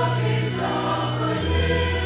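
Mixed choir of women's and men's voices singing a slow sacred song, holding sustained chords; the low part steps down to a lower note about a second and a half in.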